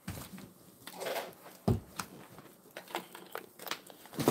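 Light knocks and rustling from someone moving about and handling a cardboard ammunition box, with one sharper knock a little under two seconds in.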